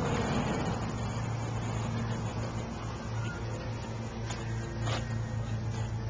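A motor vehicle engine idling steadily, heard as a low, even hum. There are a couple of faint clicks a little past the middle.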